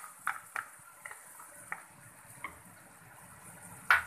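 A spatula scraping fresh cream (malai) from a plastic bowl into a frying pan of spiced onions, giving a few light scattered taps and knocks, with a louder knock near the end. A faint sizzle from the hot pan runs underneath.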